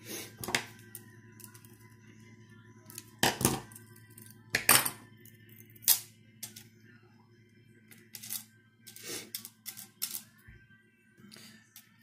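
Metal jump rings of 14-gauge fence wire clinking against each other and against steel pliers as a chainmail ring is closed and the linked rings are handled and set down on a wooden table: about a dozen short, sharp clinks at uneven intervals, the loudest a few seconds in.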